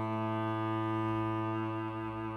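Solo cello holding one long, low bowed note, steady and unbroken.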